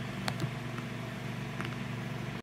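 Steady low hum of a grow tent's ventilation fan, with a couple of faint clicks.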